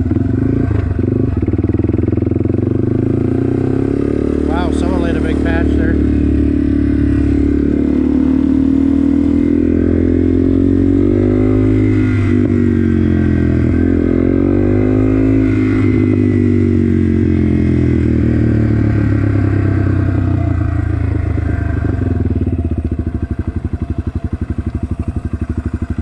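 Yamaha TW200's air-cooled single-cylinder four-stroke engine running steadily under way. Its pitch rises and falls twice around the middle.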